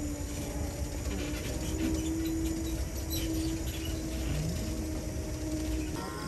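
Low steady rumble with a steady humming drone that breaks off and resumes a few times, typical of a tram running.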